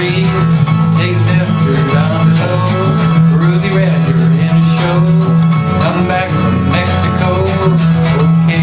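Fast chord-strumming on an 18-string acoustic guitar with a man singing along, over a steady low bass note that drops in pitch near the end.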